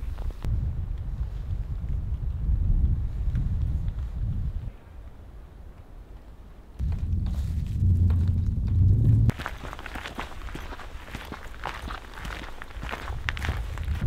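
Footsteps crunching on a frozen, rocky trail, with wind rumbling on the microphone in two gusts. After the wind drops, about nine seconds in, softer crunching continues.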